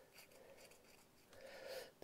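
Near silence, with faint scratching of a small metal pick cleaning the dirty pickup contact of a model locomotive. The scratching is a little louder in the second half.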